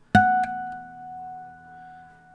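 A harmonic plucked at the 12th fret of the E string on a Dowina Hybrid nylon-string guitar (solid spruce top, granadillo back and sides), damped by the thumb a moment later. A clear tone keeps ringing on after the mute: the other strings, the A string above all, resonating in sympathy.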